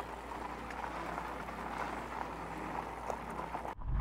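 Portable generator running with a steady low hum, with a few faint clicks and crunches of fat bike tyres on gravel. The sound cuts off suddenly near the end.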